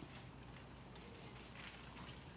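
Near silence, with a few faint taps and rustles of a Bible being handled on a wooden lectern.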